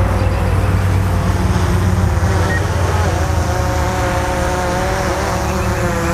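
Steady wind rumble on the microphone, with a faint hum of pitched tones from a DJI Phantom 4 quadcopter's propellers flying overhead; the tones waver slightly about halfway through.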